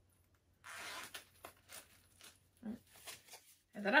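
The small zip of a coin purse is pulled open in one short rasping stroke about half a second in, followed by light clicks and rustles of the purse being handled.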